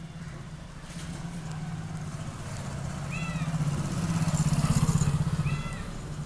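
A motor vehicle's engine passing, its low pulsing rumble building to a peak near the end and then easing off. Two short high chirps come about two and a half seconds apart.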